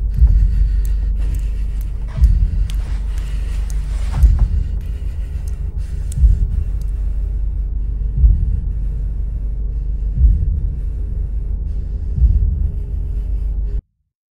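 Dark ambient film score: a deep, steady rumbling drone with a heavier low thud about every two seconds. Faint ticks show over the first few seconds, and it cuts off suddenly near the end.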